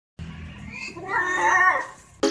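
A cat's drawn-out yowl, one call that rises and then falls in pitch, during a tussle between two cats.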